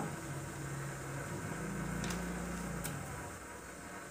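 A low, steady background hum, with two faint, brief rustles about two and three seconds in.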